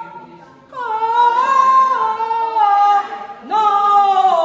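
A woman singing unaccompanied in long, high held notes that step down in pitch. It starts after a short lull at the beginning, and a new note slides up into place near the end.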